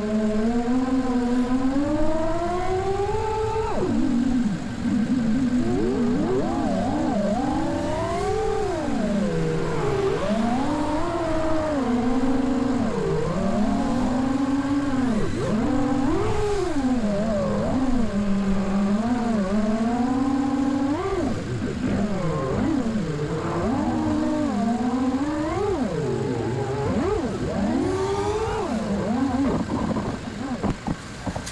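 Brushless motors and propellers of an FPV quadcopter, prototype T-Motor 2505 1850 KV motors on 6S, whining as it flies. The pitch holds steady for the first couple of seconds, climbs, then swoops up and down rapidly with the throttle, with a steadier stretch a little past the middle.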